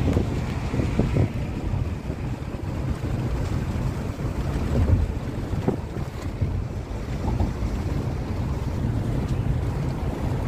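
Steady low rumble of tyre and wind noise inside a moving car's cabin, picked up on a phone microphone, with a few brief knocks, the loudest about five seconds in.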